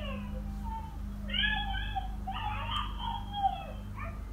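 Toddler girls yelling in high-pitched voices, heard through a baby monitor over its steady low hum, in two stretches: one trailing off about half a second in, another from just past a second to near the end.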